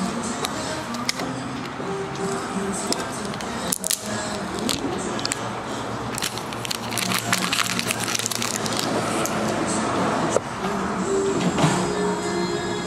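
Crackling and rustling of plastic shrink-wrap being torn and peeled off an iPhone 11 Pro box, in many quick irregular crackles, over background music.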